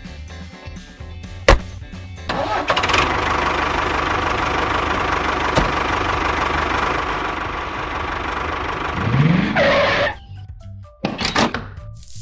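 Background music with a tractor engine sound running steadily from about two seconds in, rising in pitch near the end before it cuts off. A single sharp knock comes just before the engine sound starts.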